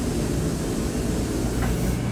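A steady mechanical noise with a low hum underneath, even in level and without distinct events.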